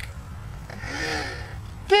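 A person's breathy laugh about a second in, over a low rumble.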